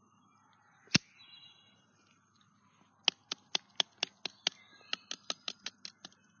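Sharp snaps and clicks of twigs and leaf litter being handled and poked around a rotting log on the forest floor. One loud crack comes about a second in, then a quick irregular run of about fifteen clicks, roughly four or five a second, over the last three seconds.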